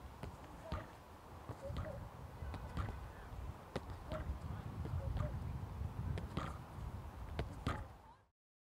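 A football kicked against rebound boards and coming back off them, giving a series of short knocks about once a second, with wind rumbling on the microphone.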